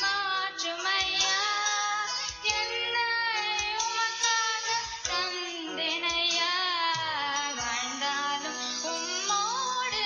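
A teenage girl singing a devotional song into a microphone over instrumental backing music. Her voice glides and wavers on long held notes.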